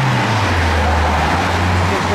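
A motor vehicle's engine running close by in street traffic: a low hum that drops in pitch at the start, then holds steady, over a haze of road noise.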